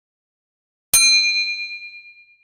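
A single bell 'ding' sound effect for the notification bell on a subscribe animation: one bright strike about a second in, ringing with a slight waver and fading out over about a second and a half.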